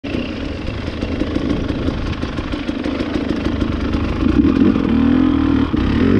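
KTM enduro dirt bike engine running at a steady idle, picking up and rising a little in pitch from about four seconds in as the throttle is opened slightly.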